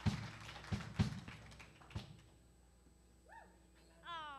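Four dull thumps over the first two seconds, then a quiet room with a brief faint voice near the end.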